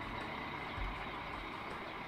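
Steady low rumble of an idling diesel truck engine, with a faint thin high tone held steady above it.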